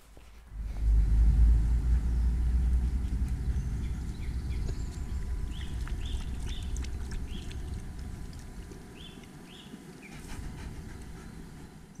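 A low rumble that rises about a second in and slowly fades, with several short bird chirps in the middle.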